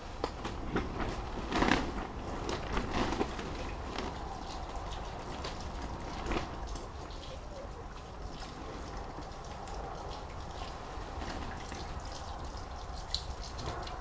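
Nutrient solution poured from a plastic jug into fabric potato grow bags: a steady trickle of liquid, with a few brief knocks in the first several seconds.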